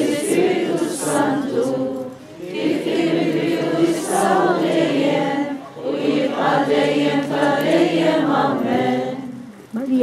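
A group of people singing a prayer hymn together, in long held phrases with a short break between each, about every three seconds.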